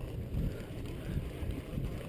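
Wind buffeting the microphone as a low, steady rumble, over the faint wash of lake water around the boat.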